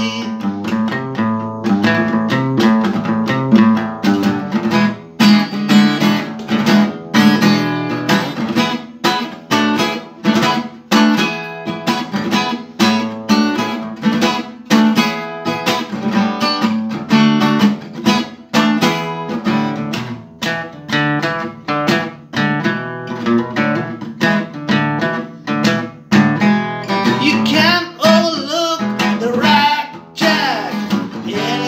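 Acoustic guitar strummed steadily, mostly without words, with a man's singing voice coming in near the end.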